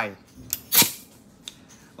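Compressed air let into a pneumatic flexi point driver: a click about half a second in, then one short, sharp burst of air, and a smaller click about a second later.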